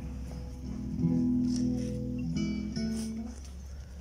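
Acoustic guitar playing a few held chords, the chord changing about a second in and again a little after two seconds.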